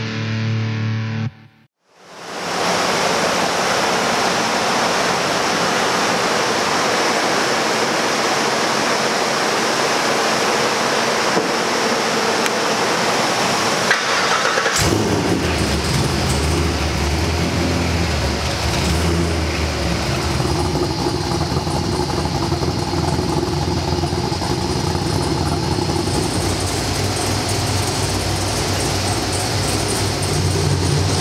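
A loud, steady rush of noise, joined about halfway through by a low, even rumble from the 50th Anniversary Camaro's cammed V8 running on a chassis dyno. The first second is the end of a music sting, cut off by a brief gap.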